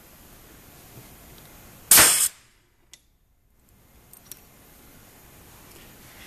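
Stamp Perfect SS pneumatic ring-marking machine firing its internal hammer once, about two seconds in: a single loud, sharp bang as a three-inch steel star stamp is driven into a stainless steel ring. A few faint clicks follow.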